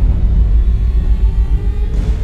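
Loud, steady deep bass rumble of trailer sound design, with faint sustained higher tones over it.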